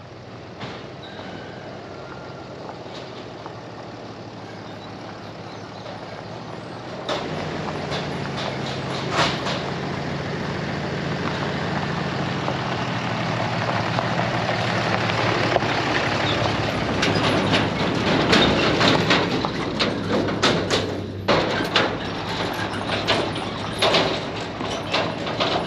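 Red Ram 2500 pickup truck pulling a loaded flatbed trailer, driving slowly up a gravel drive and past. Its engine hum grows louder as it approaches, with tyres crunching and popping on the gravel, loudest in the second half.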